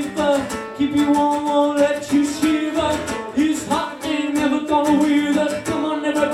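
A man singing live while strumming an acoustic guitar.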